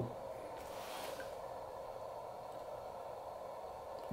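Homemade 20/40 m CW QRP transceiver receiving on 14.035 MHz: a steady, faint hiss of band noise through its speaker, pitched in a narrow band, with no clear Morse tone.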